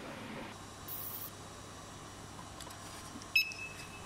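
A code scanner's electronic beep about three and a half seconds in: one short, high steady tone confirming a successful read of a laser-marked code.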